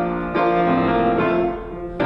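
Grand piano playing sustained chords, with a new chord struck about a third of a second in: the piano introduction to a sung introit.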